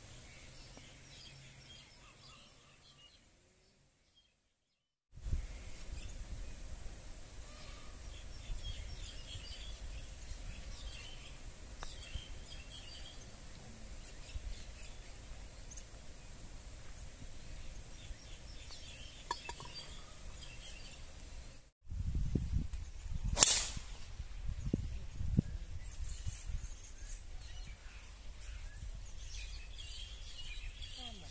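Outdoor golf-course ambience with birds chirping over a low rumble. About three quarters of the way through comes a single sharp crack, a driver striking a golf ball off the tee.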